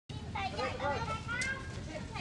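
Several children talking and calling out over one another in high voices, with a steady low rumble underneath.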